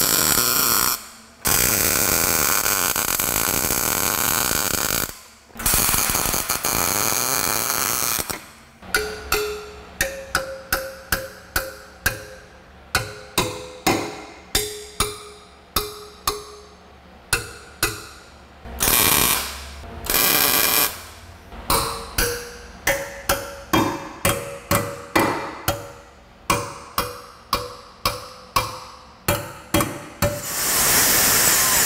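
Arc welding tacking a steel repair plate onto the unibody's rear subframe mount, in three bursts of a few seconds. Then a hammer beating the tacked steel piece flat in quick ringing blows, about two a second, broken by one more short weld burst.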